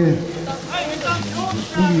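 A man's voice talking over steady outdoor background noise.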